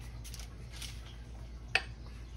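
Faint, soft strokes of a pastry brush spreading egg wash over puff pastry, then a single sharp click near the end as the brush goes back into the small egg-wash bowl.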